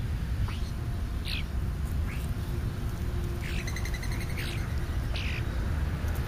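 European starlings calling: short down-slurred whistles about once a second, with a rapid buzzy rattle midway, over a steady low rumble.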